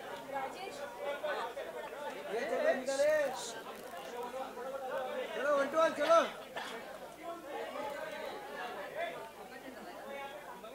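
Several voices talking over one another in a large room, background chatter with no single clear speaker, with a couple of louder voices standing out about three and six seconds in.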